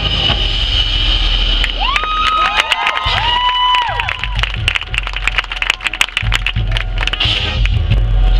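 Marching band and front-ensemble percussion playing a field show: sustained chords, then a few notes that slide up, hold and slide back down, over a run of sharp percussion strikes.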